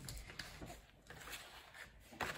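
Quiet room tone with a few faint, soft clicks and rustles.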